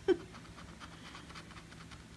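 A silver coin scratching the coating off a scratch-off lottery ticket in quick repeated strokes, several a second, which die away near the end. A brief laugh or voice sound comes right at the start.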